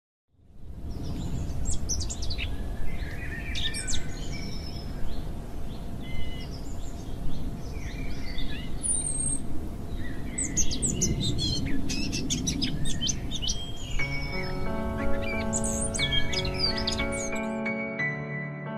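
Outdoor ambience: many small birds chirping and calling over a steady low rumble, starting suddenly about half a second in. About fourteen seconds in, slow ambient music with long held notes comes in beneath the birds.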